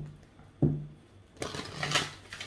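Two short low hums, then, from about a second and a half in, a burst of papery rustling as a deck of oracle cards is handled.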